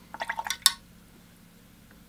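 A watercolour brush being rinsed and tapped in a jar of water: a quick run of wet clinks and splashes lasting about half a second.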